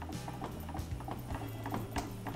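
Rapid, fairly even clicking of a kitchen utensil against a bowl or pan as an egg-and-milk mixture is whisked and stirred, over quiet background music with a steady low tone.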